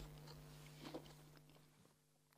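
Faint chewing of a mouthful of fresh apple, with a couple of soft crunches about a second in, over a low steady hum; otherwise near silence.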